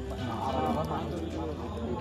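Several people talking over one another, with music playing underneath.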